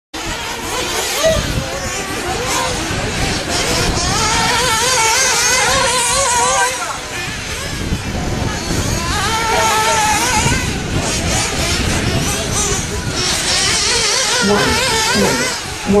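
Radio-controlled racing cars running on a dirt track, their motors whining and wavering up and down in pitch as they speed up and slow down.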